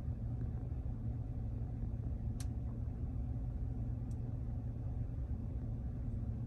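Steady low road and engine rumble inside a moving car's cabin, with two faint sharp ticks about two and four seconds in.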